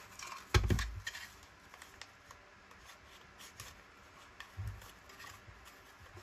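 A plastic We R Memory Keepers tab punch and a paper strip being handled: scraping and small clicks as the strip is worked into the punch's slot. There is a dull knock about half a second in and a softer one later.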